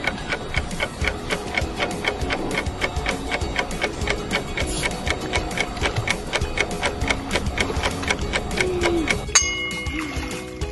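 Ticking-clock sound effect, steady and rapid, laid over background music to mark time passing. Near the end a sharp bright sound cuts in.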